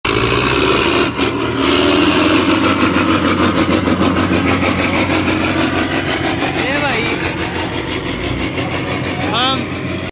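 Diesel tractor engine running loudly at close range, with a steady low rumble and even knocking pulses. Crowd voices call out over it, a few times near the end.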